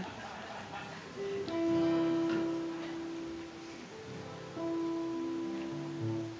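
Acoustic guitar strummed softly between songs: two chords about three seconds apart, each left to ring on.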